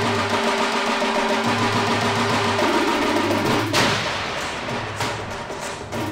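A recorded bhangra track playing on air, with drums and percussion, changing in texture about four seconds in.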